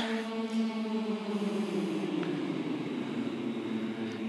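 A large group of male singers humming the held "ng" of "young" in unison, gliding slowly down an octave to settle on the lower note near the end.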